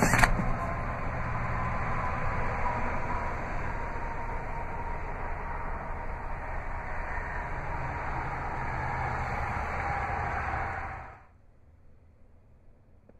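A rear seatback folding down with a short knock at the very start, then a steady rushing background noise that cuts off suddenly near the end.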